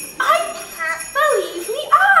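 Sleigh bells jingling steadily: the theatre's effect for an approaching sleigh. From about a quarter second in, voices with sliding, rising and falling pitch sound over the bells.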